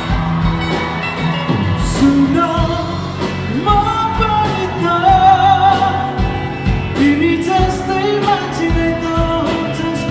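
Live rock band playing a Nepali song: a man singing lead over drums, acoustic guitar and electric guitars, the voice coming in about two seconds in.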